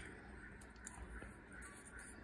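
Near silence, with a few faint, soft ticks from a paper quilling strip being handled and wound onto a slotted quilling tool.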